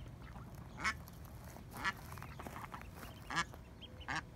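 A duck quacking: three short calls spaced about a second or more apart.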